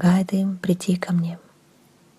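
A person speaking for about the first second and a half, then a quiet pause with only faint room tone.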